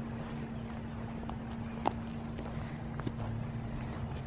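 Footsteps on grass: a few light clicks, the sharpest about two seconds in, over a steady low rumble and a faint steady hum.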